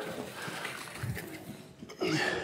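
Chairs being moved back across a stage floor: faint knocks and shuffles of the chair legs, with a few soft low thumps around the middle.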